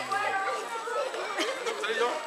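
Children chattering, several high voices talking over one another.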